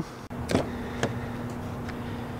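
Rear door handle of a Ford F-150 Lightning pulled and the door latch releasing, with two short clicks about half a second and a second in, over a steady low hum.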